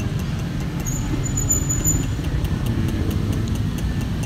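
Steady low rumble of outdoor background noise, of the kind passing traffic makes, with a thin high tone heard for about a second near the start.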